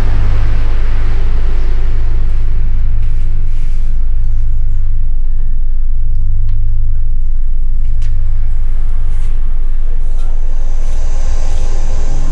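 A loud, deep, steady rumbling drone that swells and eases slightly, with a few faint clicks over it and a thin hiss coming in near the end. It is an ominous low soundscape laid under the film.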